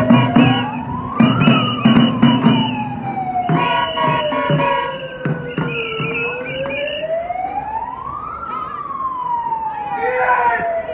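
A siren wailing in slow cycles, its pitch rising for about two seconds and then sinking for about four to five, heard twice, over music and voices.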